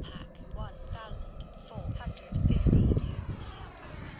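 Twin electric ducted fans of a large RC model jet flying by, a whine that falls in pitch as it moves away, with a loud gust of wind on the microphone a little past halfway.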